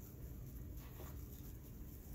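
Faint rustling of ribbon being folded and pressed down into loops on a pegged bow maker, with a few light ticks, over a steady low hum.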